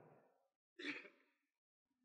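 Near silence with one short breath from a man at the microphone, about a second in.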